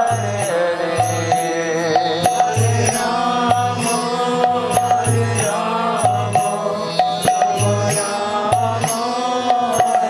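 Devotional kirtan: a man's voice singing a chanted melody over a drum beating a steady rhythm about twice a second, with sharp high clicks falling on the beat.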